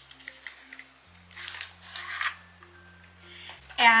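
Soft background music of low, held notes, with a short papery scrape about a second and a half in from a cardboard playing-card box being handled at its end flap. A woman starts speaking just before the end.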